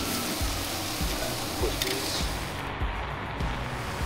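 Background music with a steady beat over the hiss of goose breasts searing on a hot flat-top griddle.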